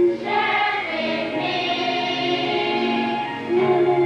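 Music: a choir of voices singing a song with accompaniment.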